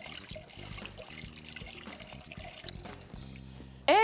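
Whole milk pouring into a hot butter-and-flour roux in a saucepan while it is stirred: a soft liquid pouring sound. Quiet background music plays underneath.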